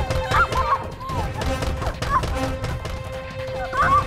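A woman's high, wavering cries of strain and fear as she pushes against a door to hold it shut, in short outbursts, the loudest near the end. Under them is tense background music with a steady held note.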